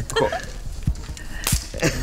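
A single sharp gunshot about one and a half seconds in, a shot at a shooting target that scores a hit, with a short spoken word just before it.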